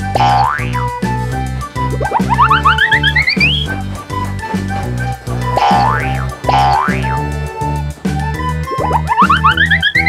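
Bouncy children's cartoon music with a steady, plodding bass line, overlaid with cartoon trampoline 'boing' sound effects. Each is a quick rising pitch sweep, and they come about four times, every two to three seconds.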